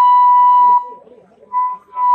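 Handheld megaphone letting out a steady, high-pitched feedback whistle: one long tone that cuts off a little under a second in, then two short ones near the end.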